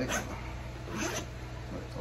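Zipper on a nylon tactical bag being pulled, two short rasps, one right at the start and one about a second in, over a steady low hum.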